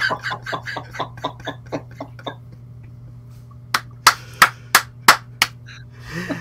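A man laughing in quick bursts that fade over the first two seconds. Near the end come six sharp hand claps, about three a second.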